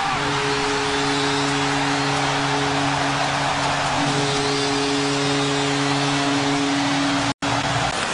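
Ice-hockey arena goal horn sounding one long steady blast over a cheering crowd after a home-team goal; both cut off suddenly near the end.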